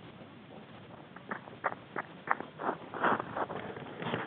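Footsteps crunching through snow, about three a second, getting louder as they come closer.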